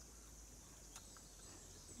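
Near silence: faint outdoor background ambience with no distinct event.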